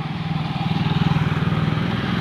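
A small motorcycle passes close by, its engine running with an even, pulsing note that grows louder over the first second and then holds steady.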